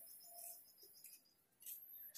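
Near silence, with a faint high bird chirp or two.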